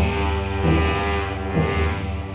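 Tibetan monastic ritual music: sustained, droning wind-instrument tones held over slow, deep drum beats.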